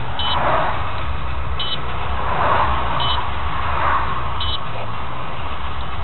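Short electronic beeps, four of them about a second and a half apart, over a steady low engine-like rumble. A hiss swells and fades three times.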